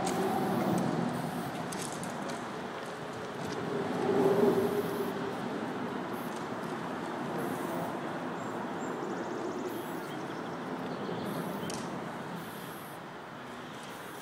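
A steady rumble of passing traffic that swells about four seconds in. A few short, faint hisses of an aerosol spray-paint can sit on top.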